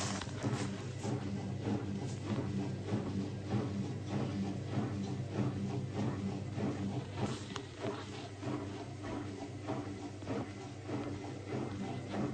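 Zanussi ZWT71401WA front-loading washing machine tumbling its drum slowly with a steady motor hum and a run of soft knocks from the two soaking wet towels. It is redistributing an unbalanced load before the spin.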